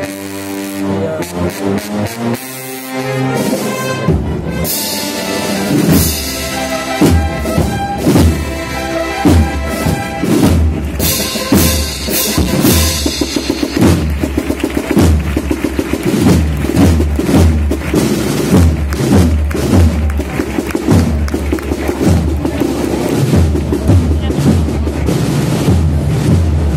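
A municipal wind band (banda de música) playing a Holy Week processional march. Sustained brass and woodwind chords open the passage, snare and bass drums come in a few seconds later, and the drums then mark a steady marching beat under the melody.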